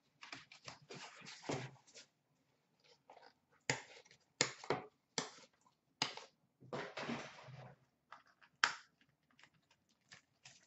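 Cardboard and plastic card-pack packaging being handled and pulled apart: irregular rustles and scrapes with several sharp clacks, the loudest about four and nine seconds in.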